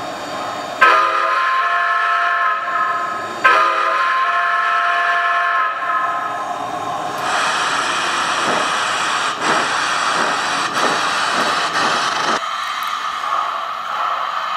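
Sound system of an O-scale model Santa Fe 5001-class 2-10-4 steam locomotive: two long whistle blasts. These are followed by a loud hiss of open cylinder cocks, with slow chuffs, as the engine starts off. The hiss stops near the end.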